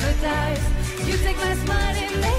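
A woman singing a pop song into a microphone over a band backing with a steady low beat, her voice gliding and wavering on held notes.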